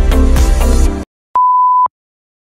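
Background music with a beat cuts off abruptly about halfway through, followed by a single half-second high, steady beep of a video countdown leader.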